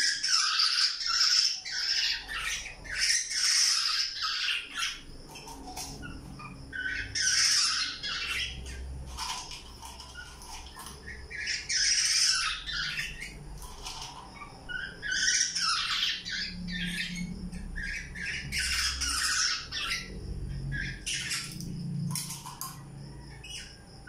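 Fledgling black-naped oriole begging to be fed with harsh, raspy squawks, in bouts of about a second repeated every few seconds.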